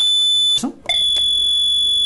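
Telephone line tone on a phone-in call: a steady, high-pitched beep that stops after about half a second and starts again about a second in, with a click as it resumes.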